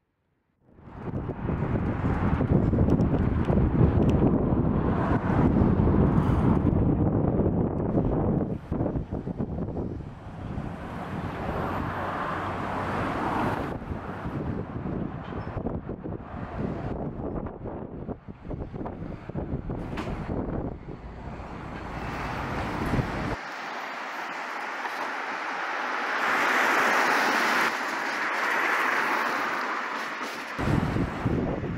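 Wind buffeting the camera microphone, a loud, gusting low rumble. It gives way suddenly, about three-quarters of the way through, to a lighter, higher hiss of wind.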